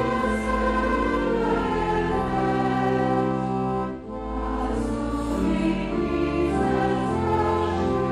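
Clarinets, double bass and organ playing a hymn, with singing over them. The music dips briefly between phrases about four seconds in.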